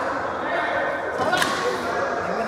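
A badminton racket striking a shuttlecock once, a single sharp crack about one and a half seconds in, over chatter in a sports hall.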